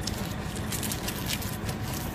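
Cellophane wrapper of a sealed cigarette pack crinkling in a few short crackles as it is torn open, over a steady low background rumble.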